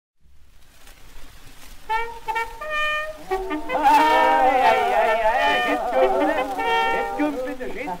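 Acoustic-era 1912 shellac 78 rpm record: surface hiss, then a few short held brass notes, followed by several men's voices talking over one another as a crowd.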